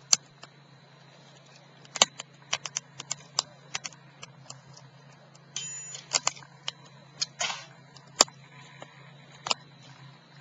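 Wood fire crackling: irregular sharp pops and snaps from burning sticks, a dozen or more, with a brief high whistle about five and a half seconds in.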